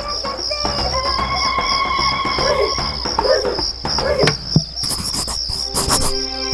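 Crickets chirping steadily in an even, rapid pulse, a cartoon sound effect, over soft background music with a few held notes.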